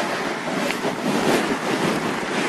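Steady rushing noise on the microphone of the recording, loud and even, with no clear words.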